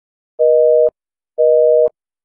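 Telephone busy signal: two beeps of about half a second each, one second apart, each a steady two-note tone.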